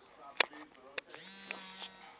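A few sharp clicks, then a steady electric-sounding buzz that starts just after a second in.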